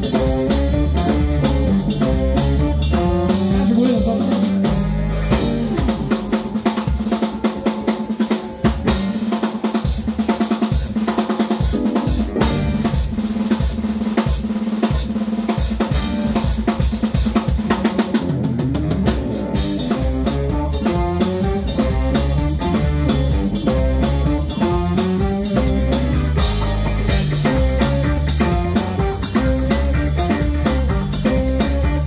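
Live funk band playing, drum kit to the fore, with bass guitar, electric guitar, keyboard and saxophones. From about five seconds in the bass drops away, leaving drums and a held note, and the full band comes back in at about eighteen seconds.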